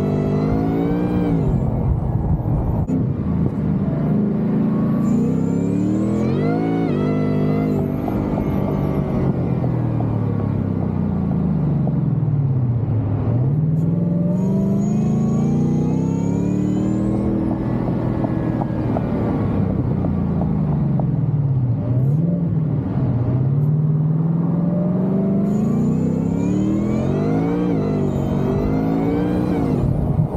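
Whipple-supercharged 5.0 Coyote V8 of an S650 Mustang GT running through its MBRP cat-back exhaust while driving. In the first several seconds the revs rise and drop repeatedly through quick upshifts. The pitch then falls and climbs again in two long swells as the car slows and pulls away, and it rises once more near the end.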